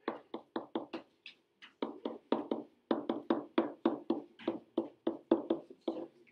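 Pen tapping and knocking against the surface of an interactive whiteboard while an equation is written: a rapid, uneven string of short taps, about four or five a second, with a brief lull about a second in.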